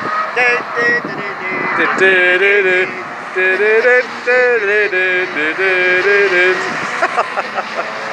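A man singing a tune in short held notes that step up and down, stopping about six and a half seconds in, over the sound of cars going by on the track.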